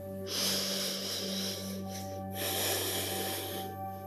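A woman's two long, loud breaths close to the microphone, each lasting over a second with a short pause between, over soft ambient music with a steady low drone.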